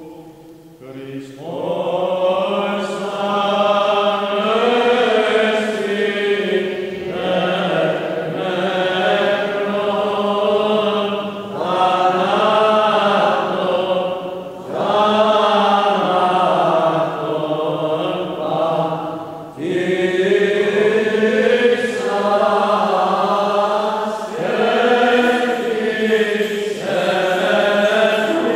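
Greek Orthodox Byzantine liturgical chant: a voice singing long, slowly wavering melismatic phrases with brief breaks between them, starting about a second and a half in.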